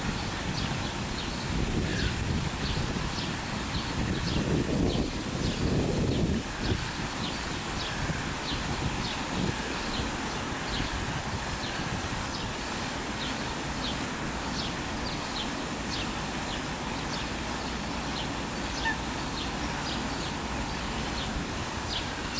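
Eurasian coot chicks peeping: a steady run of short, high peeps, about two a second, over a low rumble of wind on the microphone that swells about four to six seconds in.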